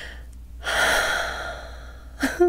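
A woman's deep breath through the mouth, starting about half a second in and fading over about a second.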